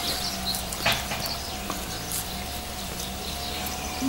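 A flying insect buzzing steadily close by, with a few light clicks in the first couple of seconds and faint high chirps.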